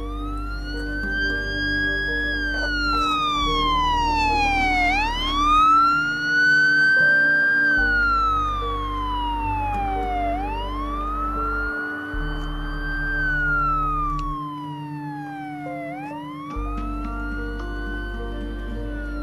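Police siren wailing, its pitch rising and falling in slow sweeps of about five seconds each, over soft music with low sustained notes.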